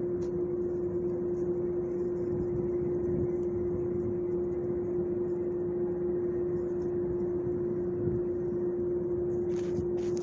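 Steady machine hum: one constant tone over a low rumble, unchanging in pitch or level, with a brief hiss near the end.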